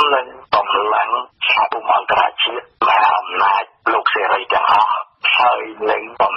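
Speech only: a radio news reader talking continuously in Khmer.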